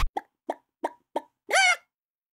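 A hen clucking: four short clucks about three a second, then one longer, drawn-out cluck.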